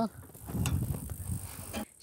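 Small petrol engine of a homemade saw bench running, a low, uneven rumble with one sharp click about two-thirds of a second in; it breaks off abruptly just before the end.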